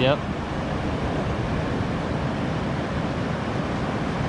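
Steady wash of ocean surf on a beach, mixed with wind noise on the microphone.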